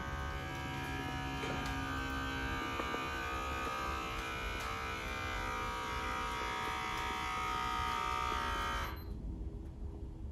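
Automatic blood-pressure monitor's pump running steadily as it inflates the arm cuff, then stopping abruptly about nine seconds in when the cuff is full.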